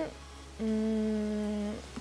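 A woman's voice holding a steady hesitation hum at one pitch for about a second, before her speech resumes.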